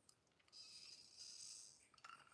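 Faint, breathy sipping of a person drinking from a glass, a soft hiss lasting about a second and starting about half a second in.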